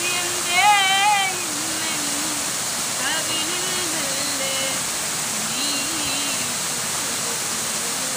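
A woman singing a Malayalam song solo, with wavering held notes. The loudest phrase comes about a second in, and softer phrases follow. Behind her voice runs the steady rush of a waterfall.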